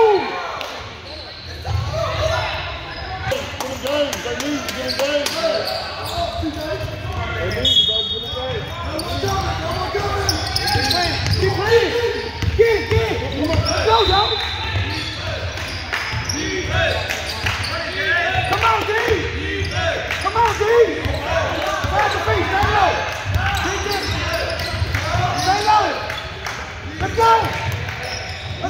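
Spectators and players talking and shouting over one another in an echoing gym, with a basketball bouncing on the hardwood court during play.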